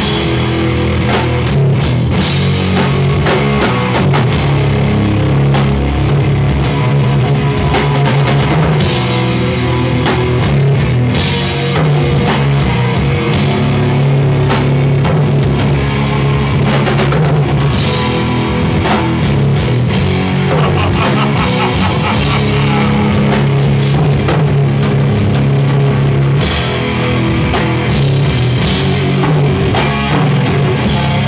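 A live doom-groove metal band playing loud: distorted electric guitars over a pounding drum kit with cymbal crashes, in a steady heavy groove.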